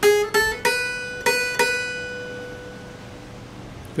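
Acoustic guitar picking five single notes on the high E string, frets 4, 5 and 7 and then 7 twice more, all within about a second and a half. The pitch steps up twice and then repeats, and the last note is left ringing and slowly fading.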